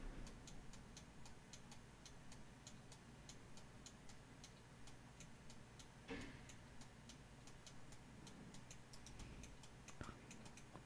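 Near silence with a faint, rapid, regular ticking, several ticks a second, and one brief soft noise about six seconds in.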